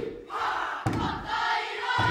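A kapa haka group performing a haka: many voices shouting in unison, punctuated by a heavy thud about once a second.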